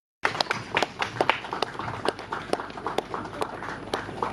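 Scattered applause from a small crowd: irregular sharp claps, several a second, over a background of crowd noise.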